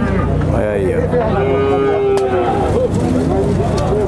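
Zebu-type cattle mooing in a crowded pen, with one long steady moo lasting about a second near the middle.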